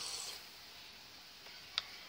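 A single sharp click of a computer mouse button near the end, over faint steady room hiss.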